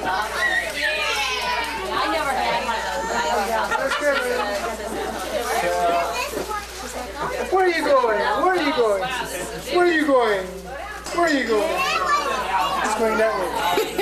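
Several people talking over one another at once, a steady stream of overlapping conversational voices, with a constant low hum underneath.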